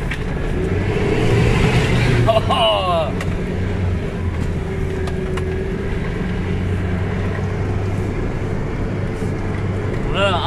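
Toyota Land Cruiser engine running steadily under load through mud, heard from inside the cabin as a constant low drone. A brief voice cuts in about two and a half seconds in.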